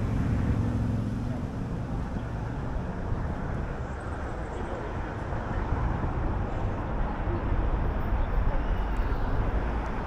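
Steady rumble of city road traffic, an even low wash of noise with no distinct events.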